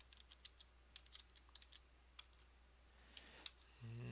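Faint typing on a computer keyboard: a scattered run of light keystroke clicks over the first two seconds or so.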